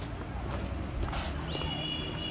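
Outdoor street ambience while walking, with scattered light clicks of footsteps and handling on the phone. A steady high whistle-like tone comes in about one and a half seconds in.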